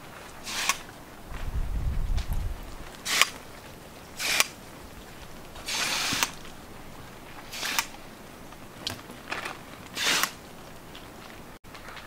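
Hose-end watering wand spraying water in about eight short bursts, each starting and stopping within half a second or so. A low rumble between about one and a half and two and a half seconds in.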